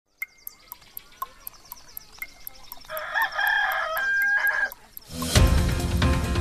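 Clock-ticking countdown effect, about four ticks a second with a stronger tick each second; a rooster crows about three seconds in, and loud theme music with a beat starts near the end.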